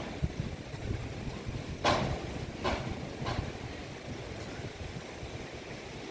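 Hammer blows on roofing sheets: three sharp knocks about two to three and a half seconds in, the first the loudest, over a steady low rumble of wind on the microphone.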